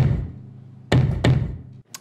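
Electronic bass drum played through a subwoofer suspended inside a real bass drum shell, triggered from electronic pads: a deep thud right at the start, then two more close together about a second in, each ringing briefly.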